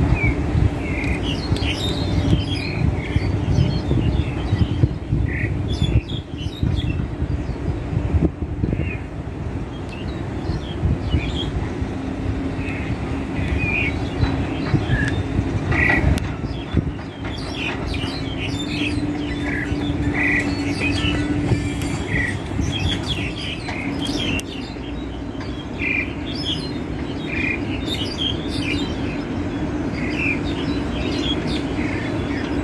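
Wild starling calling: a string of short, separate squawks and chirps, a few every second, over a steady low rumble.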